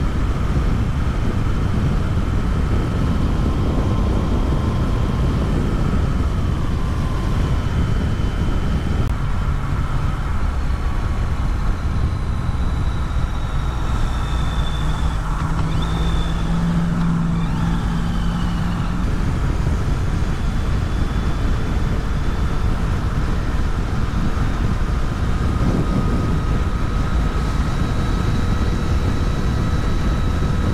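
Wind and road noise from riding a 2019 Yamaha Tracer 900 GT motorcycle, whose engine is an inline three. The rush eases about nine seconds in as the bike slows in traffic, a steady low engine note comes through in the middle, and the wind noise builds again past twenty seconds as it speeds up.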